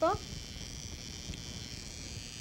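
High-frequency facial machine switched on, its glass electrode giving a steady, high-pitched electrical buzz.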